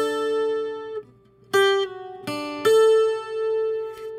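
Acoustic guitar playing a short single-note requinto lead line: a held note, then, about a second and a half in, a note slurred down one fret on the first string, followed by two more plucked notes, the last one left ringing.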